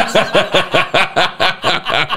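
Several men laughing hard together, in rapid, evenly spaced pulses of about six a second.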